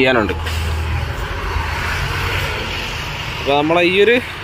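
A road vehicle passing by: a steady rush of engine and tyre noise with a low rumble that fades slowly.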